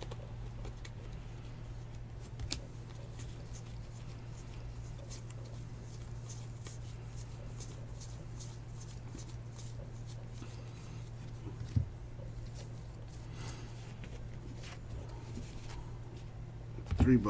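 Baseball cards flipped one after another in the hands, a run of soft papery clicks and slides over a steady low hum. Two small knocks stand out, the louder one about twelve seconds in.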